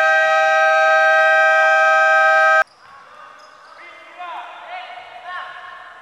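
Basketball shot-clock buzzer sounding loud and steady for about two and a half seconds as the clock runs out, then cutting off abruptly. Short sneaker squeaks on the hardwood court follow.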